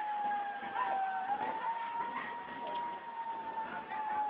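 A steady, high siren-like tone that sags a little in pitch about a second in and then rises back, over a noisy background.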